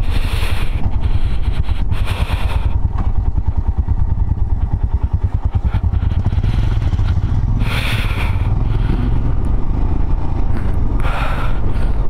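Motorcycle engine running steadily under way, a deep fast-pulsing exhaust note, with a few short gusts of wind noise on the microphone.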